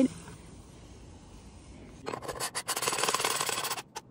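Rough rubbing and scraping from hands handling a large telescope. It starts about halfway through, runs for under two seconds, and cuts off suddenly just before the end.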